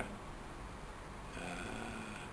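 A quiet pause with faint room noise; a little past halfway, a man gives a short, low, steady hum.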